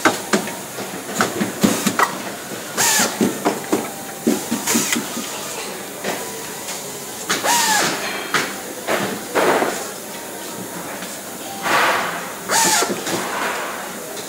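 Factory assembly-line work on pinball playfields: irregular clatter and knocks of parts and hand tools, with several short bursts of hiss.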